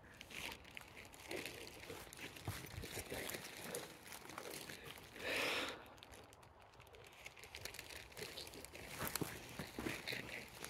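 Faint footsteps and rustling of wet grass and undergrowth underfoot as someone walks over uneven, wet, slippery ground, with one louder rustle about five seconds in.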